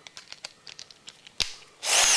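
Cordless drill's chuck being tightened by hand onto a hex-shank twist drill bit: a run of small clicks and one sharper click, then near the end the drill motor is triggered and spins up briefly.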